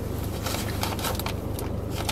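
Brown paper bag crinkling and rustling in a series of quick crackles as a hand reaches into it, over a steady low hum.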